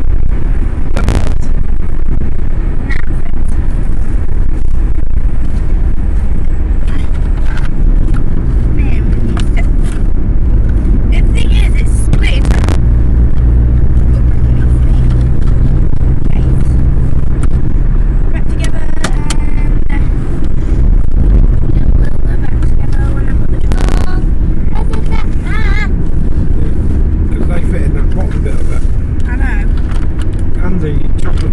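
Loud, steady low rumble of road and engine noise heard from inside a moving car, with faint voices now and then under it.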